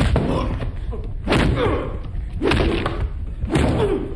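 Heavy thuds repeating about once a second, each trailed by a short falling sound, heard on the recording of a death metal album track.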